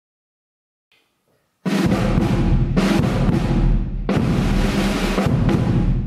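Drum kit and a large bass drum played with a mallet, with cymbal crashes, starting abruptly about one and a half seconds in after silence. The low end is a sustained deep rumble like a roll, and the cymbal wash cuts off and crashes in again about every second.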